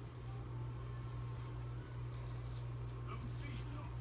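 Faint crackling of a black peel-off face mask being pulled slowly off the skin, over a steady low hum.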